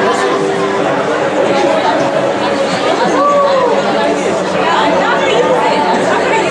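Audience chatter in a large auditorium: many people talking at once, no single voice standing out.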